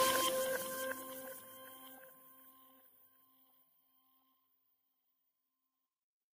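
The last notes of an outro jingle ringing out as a few steady, pure tones that fade away over about two seconds, with faint traces lingering a little longer, then complete silence.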